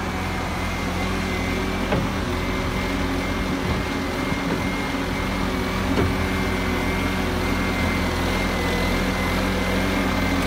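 Bobcat S650 skid-steer loader's diesel engine running steadily, with a thin, steady high whine over it. A light knock comes about two seconds in and another about six seconds in.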